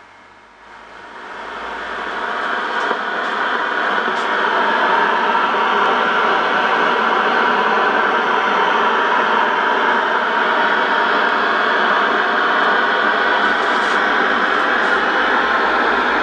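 Shortwave band noise: a steady rushing hiss from the loudspeaker of a Geloso G4/218 valve receiver after the station's AM carrier drops off. The hiss swells over the first few seconds and then holds level, with a few faint crackles.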